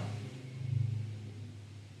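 A low, steady hum that swells into a brief rumble about half a second in, then fades.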